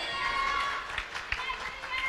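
A pause in a man's amplified sermon: faint room sound through the PA, with a thin, steady high tone for about the first second and a half and a few faint ticks.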